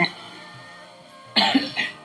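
A single short cough from an elderly woman about a second and a half in, after a quiet pause, with faint music underneath.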